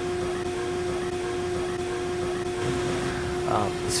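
Steady machine hum: a constant mid-pitched tone over an even hiss, unchanged throughout. A voice starts speaking near the end.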